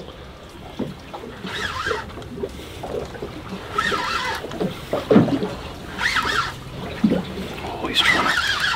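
Indistinct voices aboard a small boat, over water sloshing against the hull.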